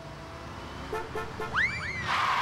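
Comic sound effects: three short horn-like toots, then a quick rising whistle-like slide.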